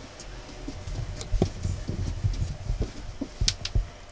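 Irregular soft thumps with a few sharp clicks, the handling and movement noise of someone moving about on a plywood crawlspace floor while filming.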